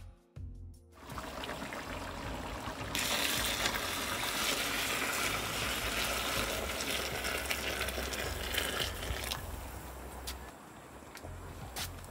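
Water poured from a pot into a large pot of hot mutton stock: a steady gush from about three seconds in, easing off near ten seconds.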